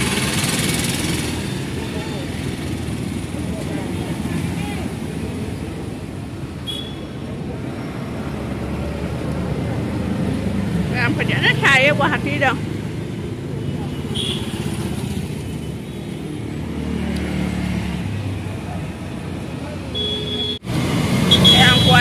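Street traffic with scooters and motorcycles running past, a steady low engine rumble. About eleven seconds in there is a brief high, wavering sound, and short high beeps come now and then.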